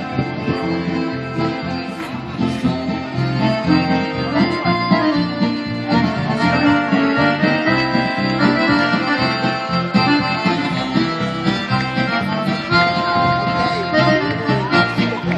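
Live accordion music, a steady stream of chords and melody played by a stage performer through a small PA.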